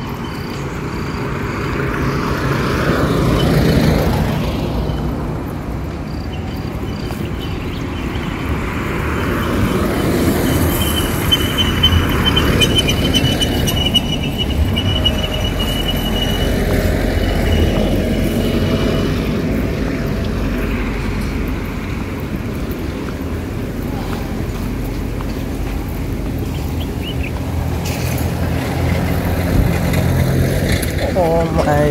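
Roadside traffic: cars passing on a paved road, the sound swelling as vehicles go by over a steady low rumble, with a thin high tone for a few seconds midway.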